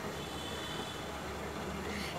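Steady hiss of a lit gas stove burner.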